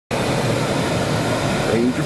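A steady rush of wind and road noise inside a moving car, with a voice starting to speak near the end.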